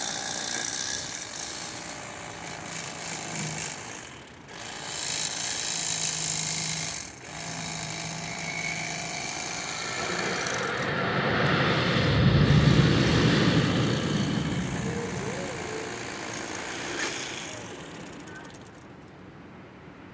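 Cordless electric fillet knife running, its reciprocating blades buzzing as they cut through a walleye. The buzz stops briefly twice, turns louder and rougher for a few seconds in the middle, and fades near the end.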